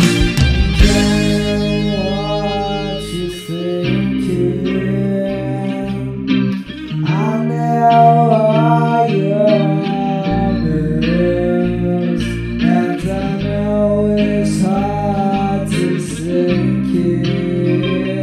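Instrumental stretch of a song, led by guitar, with a melodic lead line that slides up and down in pitch over a steady accompaniment.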